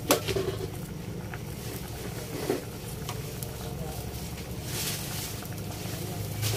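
Vegetables boiling in a stainless steel pot, bubbling steadily over a constant low hum. A plastic spatula knocks against the pot once at the start, and a few faint clicks follow.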